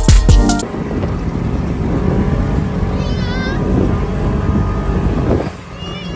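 Dune buggy (side-by-side UTV) driving over sand dunes: engine running with wind rushing past, after a brief burst of electronic music with a heavy beat that cuts off about half a second in. A high, wavering squeal sounds about three seconds in.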